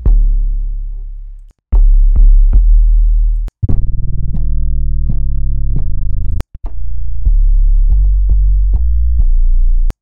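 Xfer Serum software synth sub-bass kick patches played note after note. Each deep booming note starts with a sharp attack; some decay away and others are held. There are a few brief cut-outs between them.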